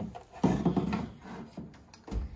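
Handling noise: an indoor rabbit-ear TV antenna and its cable being moved about on a wooden cabinet. There is a short burst of rubbing and knocking about half a second in, then a few lighter clicks.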